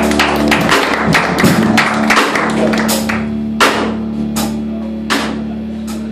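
Live band playing amplified music: a drum kit with cymbal strikes over a held guitar and bass note. The hits are dense for about three seconds, then thin to a few spaced strikes.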